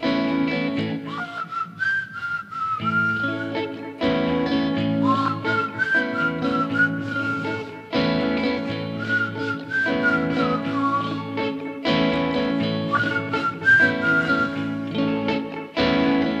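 Electric guitar playing a repeating chord figure, with a wavering whistled melody over it in four short phrases, one about every four seconds.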